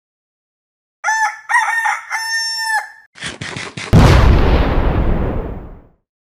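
A rooster crowing in one long drawn-out call, followed about a second later by a sudden loud low boom that dies away over about two seconds. These are sound effects for a show intro.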